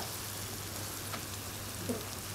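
Chanterelle mushrooms frying in butter in a pan, a steady quiet sizzle, with a low steady hum underneath.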